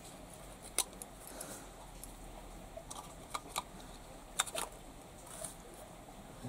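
A handful of light clicks and scrapes from a small screwdriver prying at the plastic housing and circuit board of an LED lamp being taken apart.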